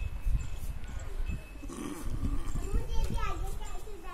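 Voices calling out in the open air, strongest in the second half, over a low rumble of wind on the microphone.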